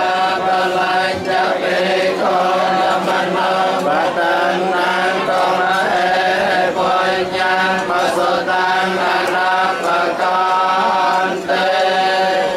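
Group of Theravada Buddhist monks chanting together in unison, a steady recitation held on a few sustained pitches, as a blessing before their meal.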